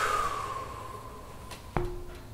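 A person's long, breathy sigh, falling in pitch and fading away, followed about three-quarters of the way through by a single sharp tap.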